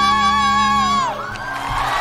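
A male singer holds a very high note with vibrato over a sustained low accompaniment; about a second in, the note slides down and breaks off, and audience cheering follows. The end of the note is a little raspy, which the listener hears as a touch of strain in the voice.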